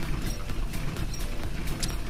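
Crazy Time money wheel spinning, its pointer clicking rapidly and steadily over the pegs, over game-show background music.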